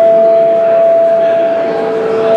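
Electric guitar feedback through a Marshall amplifier: one steady high tone held without a break, with a fainter lower tone under it.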